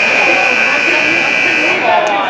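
Ice rink scoreboard buzzer sounding one long steady tone that cuts off near the end, over crowd chatter; a buzzer held this long at a youth hockey game typically marks the end of a period or the game.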